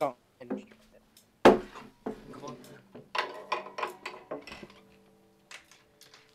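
Acoustic guitar played a note or chord at a time: a sharp first strike about a second and a half in, then a quick run of notes that ring on and fade near the end.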